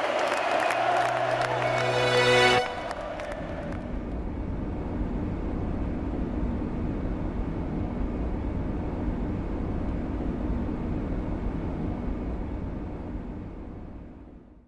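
Music that cuts off abruptly about two and a half seconds in, followed by a steady low rushing noise that fades out near the end.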